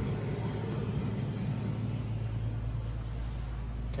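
Epson SureColor P4900 17-inch inkjet printer running mid-print: a steady low hum and whir from the machine as it lays down a photo print.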